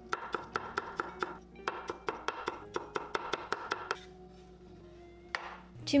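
A steel Chinese cleaver rapidly chopping ginger on a wooden cutting board, about five quick knocks a second. The chopping stops about four seconds in, and one more knock comes shortly before the end.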